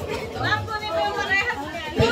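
Several people talking and chattering at once, with no clear words standing out.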